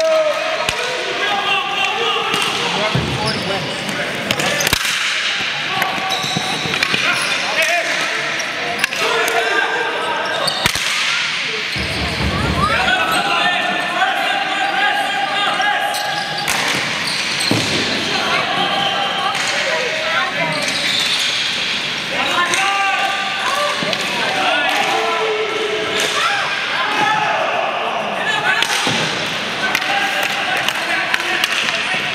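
Live ball hockey play on a dry indoor rink: sticks and the ball knocking now and then, under constant overlapping shouts from players and spectators, echoing in a large arena.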